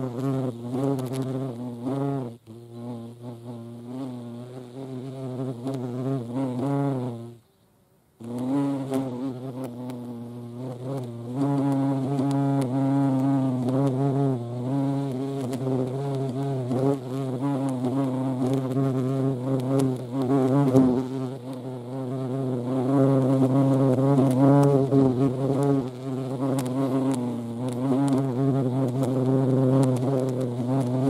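European hornet wings buzzing: a steady, low hum whose pitch wavers slightly as the insects move around close by. It cuts out for under a second about seven and a half seconds in, then resumes.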